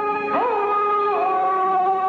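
Peking opera singing: a long drawn-out sung note that swoops up about half a second in, holds, then steps down to a lower held pitch, over the opera band's accompaniment.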